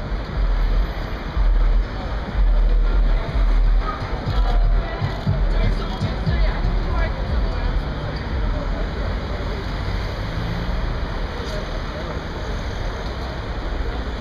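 Noisy street crowd: a jumble of voices and traffic, with heavy low rumbling surges of wind or handling noise on the phone's microphone, loudest in the first four seconds.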